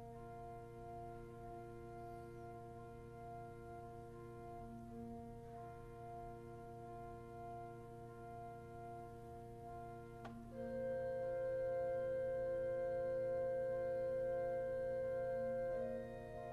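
Pipe organ playing a slow, soft piece: a long held low pedal note under a viola da gamba string stop repeating an offbeat figure. About ten seconds in, after a small click, the melody enters on a clear gedeckt flute stop with a louder held note.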